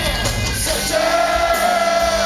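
Live rock music played on amplified cellos with drums, loud and continuous, with a long held high note entering about halfway through.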